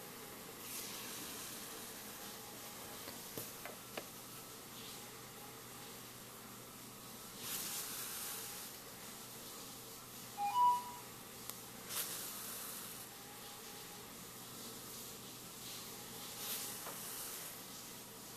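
Faint swishes of yarn being drawn through crocheted fabric as a piece is hand-sewn on with a yarn needle, one every few seconds, over a steady low hiss. About ten seconds in, a brief two-note blip is the loudest sound.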